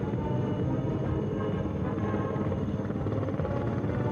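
Two helicopters flying past, their rotors giving a steady, rapid beat over the hum of their engines.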